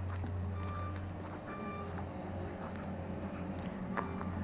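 Roadworks machinery engine running steadily at a low pitch, with two short electronic beeps about a second apart, like a reversing alarm.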